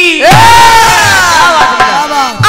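Many voices shout together in a loud group shout starting just after the start, their many pitches sliding downward over about a second and a half. The drum beat drops out during the shout.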